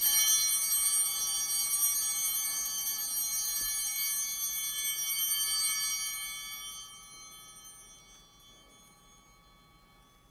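Altar bells ringing at the elevation of the chalice, marking the consecration of the wine. A bright, many-toned metallic ringing starts at once, holds for about six seconds and then dies away.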